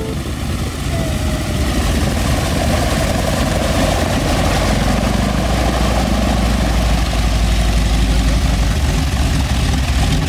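Radial engine of a Boeing Stearman biplane idling on the ground with its propeller turning: a steady low rumble that grows a little louder over the first two seconds.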